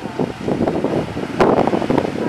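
Grand Geyser erupting: a steady rushing, splashing noise of water jetting and falling back, with a sharper, louder surge about one and a half seconds in.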